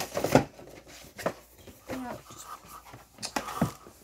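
Toy packaging being handled and set down: a string of sharp clicks and rustles from plastic and cardboard, with a few brief murmurs and breaths.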